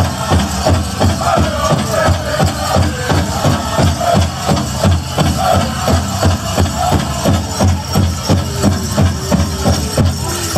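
Pow wow drum struck in a steady, even beat by a drum group, with the singers' high voices rising over it at times.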